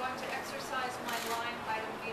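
A woman speaking steadily at a press-conference podium.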